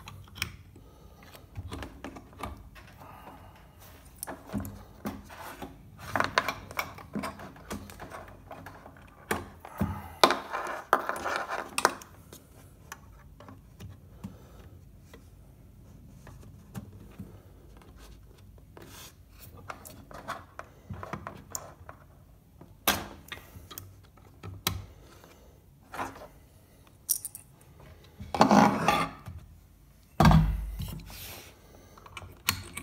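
Handling noise from audio cables being unplugged and replugged on two desktop amplifiers: scattered clicks and knocks of plugs and connectors, with several louder stretches of rubbing and scuffing, including clothing brushing close to the microphone.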